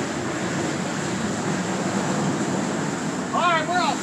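Motorboat running steadily through a corrugated-metal culvert tunnel: a steady rush of engine and water noise. A brief voiced call comes near the end.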